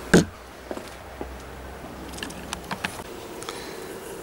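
Handling noise: a short knock near the start, then a few light clicks and taps over a faint low rumble.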